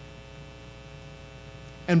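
Steady electrical mains hum with a stack of evenly spaced overtones, through a pause in speech; a man's voice comes in just before the end.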